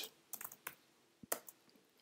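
Light keystrokes on a computer keyboard: about seven faint taps in two quick clusters, around half a second in and again shortly after the first second.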